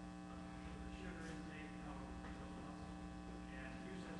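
Steady electrical mains hum, with faint, distant voices under it.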